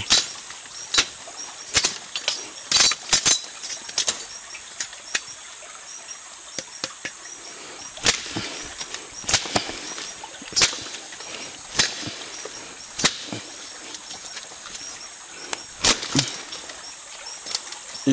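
A blade chopping into a woody liana: sharp strikes, irregularly spaced about once a second, cutting through a section of water-holding vine.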